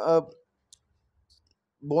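A man speaking Hindi trails off into a pause that holds a single faint, short click, and his speech resumes near the end.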